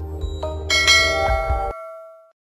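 A bright bell-chime notification sound effect rings out about two-thirds of a second in, over an outro music bed with a low beat; the music stops shortly before the end while the chime rings on and fades.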